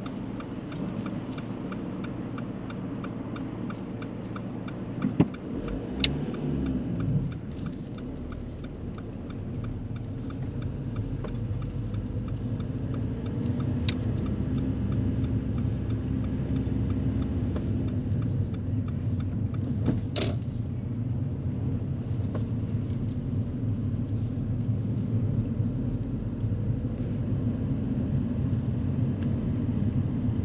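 Car engine and road noise heard from inside the cabin, with a fast regular ticking over the first several seconds and a few sharp clicks. The rumble grows louder from about ten seconds in.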